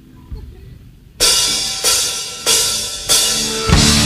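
A live doom metal band kicks off a song. After a quiet first second, the drummer strikes four loud cymbal crashes about two-thirds of a second apart. Near the end the full band comes in, heavy and loud with the drums.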